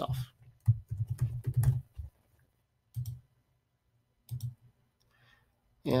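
Computer keyboard typing: a quick run of keystrokes lasting about a second and a half, followed by two single clicks about a second apart.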